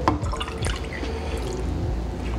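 Water pouring from a glass measuring cup into a small stainless steel saucepan that already holds vinegar, a steady trickling splash, with a light knock right at the start.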